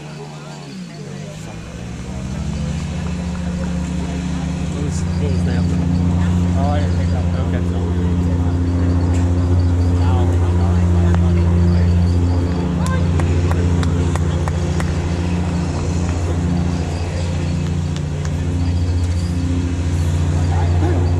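A motor vehicle's engine running steadily close by, coming in about two seconds in and growing louder, with faint voices behind it.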